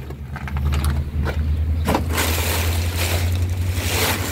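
Black plastic trash bags being handled, rustling and crinkling from about two seconds in, over a steady low hum.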